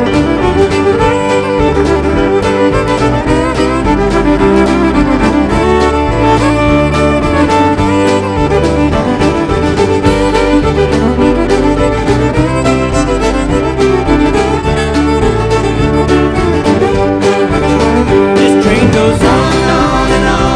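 Live country band playing an instrumental break with the fiddle taking the lead over a steady beat, with pedal steel guitar, piano, bass and drums underneath.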